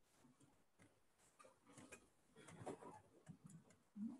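Near silence: room tone with a few faint, scattered ticks and clicks.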